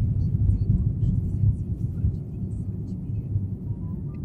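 Car interior noise while driving on a snowy road: a steady low rumble of the engine and tyres heard inside the cabin.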